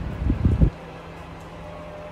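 Wind buffeting the microphone in loud low gusts, cutting off suddenly under a second in. A faint steady outdoor hum is left after it.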